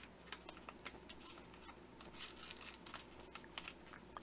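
Faint rustling and crinkling of an origami paper square being folded and flattened by hand, with small scattered paper clicks and a slightly louder rustle a little past halfway.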